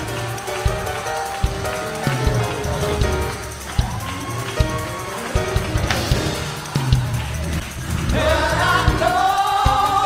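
Live gospel praise-break music: sustained chords and bass over a steady drum beat, with voices singing in about eight seconds in.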